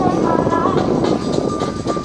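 A Dodge Charger's engine and exhaust run loudly as the car drives by, easing off in the second half, over pop music.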